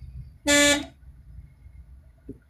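A single short car horn toot about half a second in, one steady tone lasting under half a second. Beneath it runs the low rumble of the moving car.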